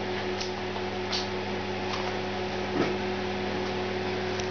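Steady electrical mains hum, a low buzz with overtones, with a couple of faint ticks about a second in and near the end of the third second.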